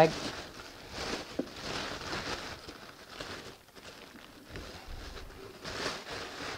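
Thin wrapping paper rustling and crinkling in uneven bursts as a leather boot is unwrapped from it by hand.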